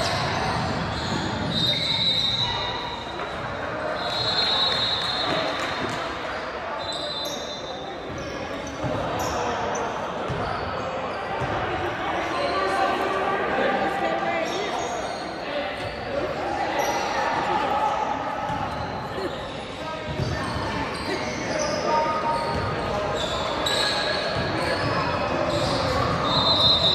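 Busy gym sound in a large echoing hall: players and coaches talking in the timeout huddles, with basketballs bouncing on the hardwood floor.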